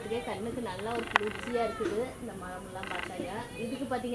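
A woman's voice, with short, rasping, pulsed calls about a second in and again near three seconds.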